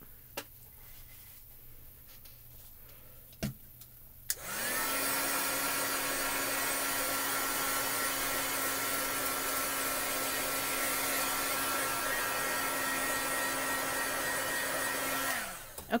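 Craft heat tool switched on with a click about four seconds in, then running with a steady whir and hum, which winds down in pitch as it is switched off just before the end. A few light handling clicks come before it starts.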